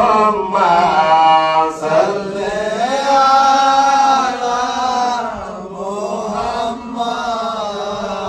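Men's voices chanting an Islamic devotional chant together, in long held melodic phrases.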